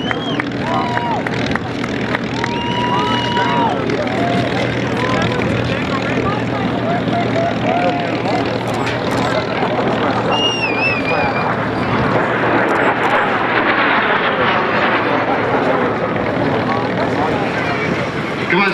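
P-51 Mustang racer Strega taxiing, its Rolls-Royce Merlin V-12 running at low power as a steady hum, with crowd voices and a few high whistles over it.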